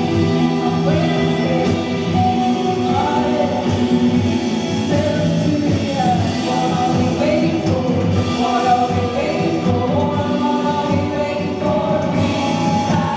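Live rock band playing a song: a singer's voice carries the melody over electric guitar and drums with cymbals.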